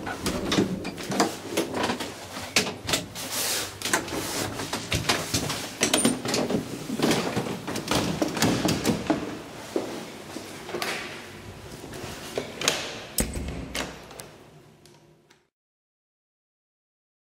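The wooden, glass-paned doors of a 1921 TITAN traction elevator being handled: a run of clacks and knocks from the door panels and latch. The sound fades out shortly before the end.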